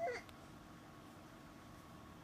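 A baby's brief, cranky whine: one short cry that bends in pitch, right at the start.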